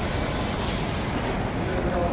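Outdoor street ambience: a steady low rumble of traffic with indistinct background voices, and a couple of short clicks.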